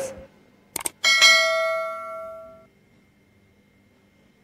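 Two quick clicks, then a single bell ding that rings out and fades over about two seconds. It is the click-and-bell sound effect of a subscribe-button animation.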